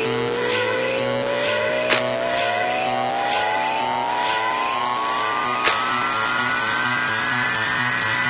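Instrumental build-up of a house track: a synth tone rises steadily in pitch through the whole passage over sustained chords, with light percussion ticking about twice a second and a sharper hit near two seconds in and again near six seconds.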